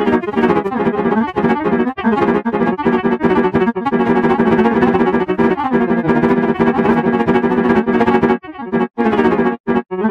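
Chord progression played back on a sampled grand piano in FL Studio Mobile: held multi-note chords changing about once a second, with a few short breaks near the end.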